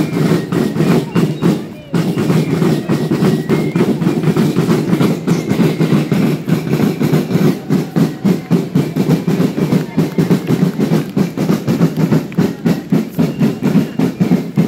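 Marching band drum corps of massed snare drums playing a fast, even march beat, with a brief break about two seconds in.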